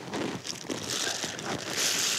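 Paper towel crumpling and rustling in the hands, loudest near the end.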